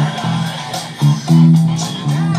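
Four-string electric bass playing a funk line of short, repeated low notes over the song's backing recording.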